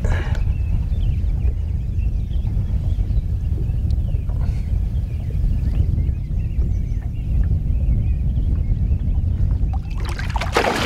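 Muffled, steady low rumble of water moving around a half-submerged action camera's housing, with faint scattered high squeaks above it.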